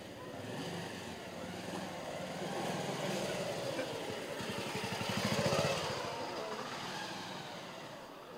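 A motorcycle approaching and passing close by. Its engine grows steadily louder to a peak about five and a half seconds in, then fades away.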